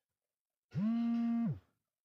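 A man holding one steady-pitched hesitation sound, a drawn-out 'mmm', for just under a second about halfway through, with near silence on either side.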